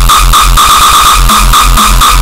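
Uptempo hardcore music: a rapid, heavily distorted kick drum pounding in an even rhythm, with a pulsing high synth tone over it.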